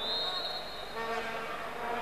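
A single long, high whistle note of about a second, typical of a referee's whistle, over the steady murmur of an indoor sports-hall crowd.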